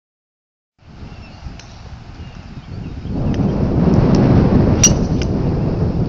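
Wind buffeting the phone's microphone, getting louder about halfway through, with a sharp click near the end: a driver striking a golf ball.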